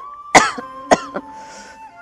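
A person coughing: one loud cough about a third of a second in, then two shorter coughs around the one-second mark, with a faint steady tone underneath.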